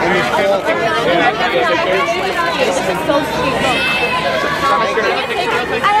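A crowd of fans chattering, many voices talking over one another at close range, with no single voice standing out.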